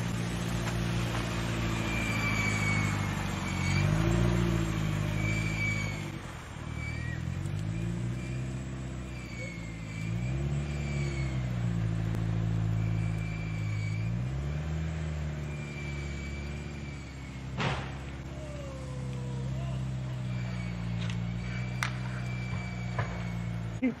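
A car engine running under a steady hum, revving up and falling back about four times, each rise lasting about a second, as a car struggles for grip on a snowy road. A single sharp click is heard in the second half.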